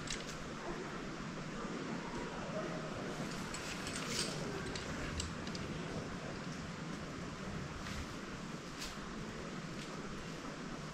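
Steady, low outdoor background noise with a few faint, short clicks, about four, five and nine seconds in.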